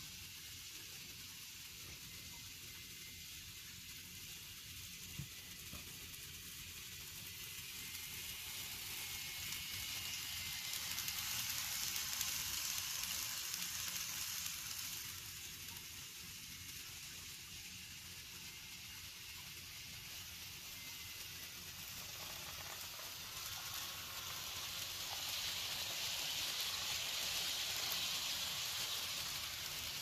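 N scale Amtrak model trains running close by: a steady hissing rattle of small metal wheels on the rails, with a faint motor whine. It swells twice, as a train passes near, around the middle and again near the end.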